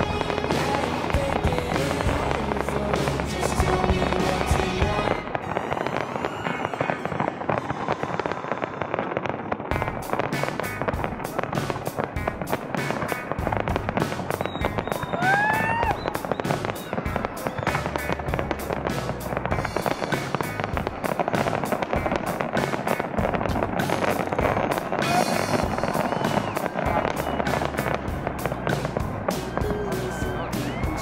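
Fireworks display going off in a dense, rapid run of crackles and bangs, thickest from about a third of the way in, with music playing throughout.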